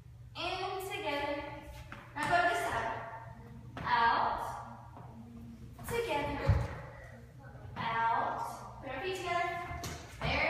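A woman's voice calling out short phrases every second or two, with a single low thump about six and a half seconds in.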